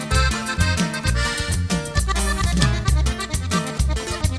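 Norteño band playing an instrumental passage: button accordion leads over a twelve-string bajo sexto, electric bass and drum kit, with a steady, quick, evenly repeating beat.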